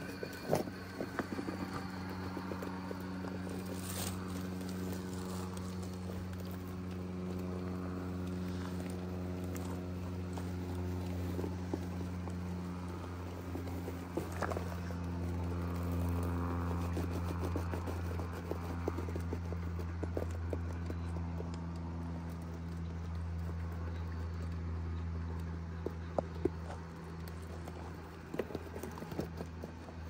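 Axial SCX6 1/6-scale RC rock crawler's motor and drivetrain with a steady low hum as it crawls, with scattered clicks, knocks and scrapes of the tyres and chassis on rock.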